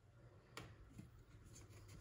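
Near silence with faint handling noise: two soft clicks about half a second apart and light rubbing, as small pieces of thin maple plywood are handled.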